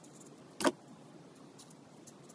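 A single short, sharp click about a third of the way in, from a felt-tip marker tapping on the paper as it is worked. Otherwise only faint hiss.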